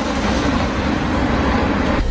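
Truck-mounted multiple rocket launcher firing a salvo: a loud, steady rushing noise of rockets leaving the launcher one after another.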